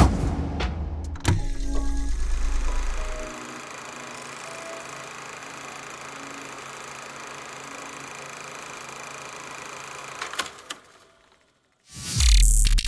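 Logo sting of music and sound effects: a sharp hit at the start and another just over a second in, over a deep bass tone, then a steady hissing drone with faint tones that fades out near the end after a couple of clicks.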